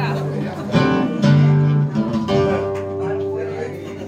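Acoustic guitar, classical style, strummed in a rumba rhythm: chords struck about a second in and again near the middle, each left ringing.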